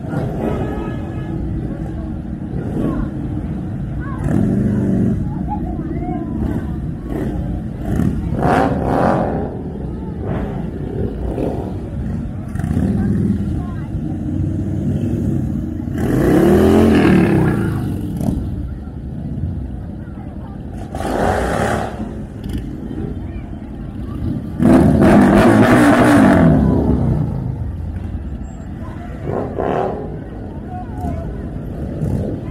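Several cruiser motorcycles riding slowly past in a procession, their engines giving a steady low rumble. Twice, once about halfway and again near the end, a rider revs an engine loudly, the pitch rising and falling back.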